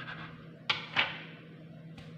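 A kitchen knife cutting through bread and knocking on a cutting board: two sharp knocks close together about a second in.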